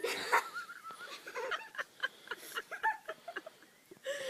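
A puppy whimpering during play: a wavering high whine in the first second, then a string of short high yips.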